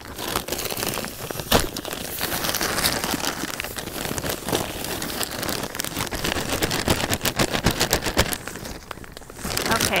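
Potting soil pouring out of a plastic bag of Espoma Organic Potting Mix into an urn: a continuous crackling rustle of falling soil and the crinkling plastic bag, with one louder crack about a second and a half in, easing off briefly near the end.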